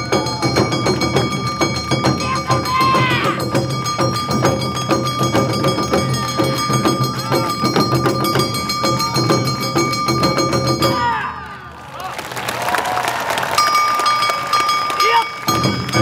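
Awa Odori festival band playing live, with percussion and melody lines under the group's voices. The music drops away briefly about eleven seconds in, giving way to a noisier stretch of voices, then comes back in full near the end.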